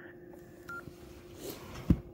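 Handheld ham radio transceiver just after the other station unkeys: faint hiss and hum, one short high beep about a third of the way in, then a sharp knock from handling the radio near the end.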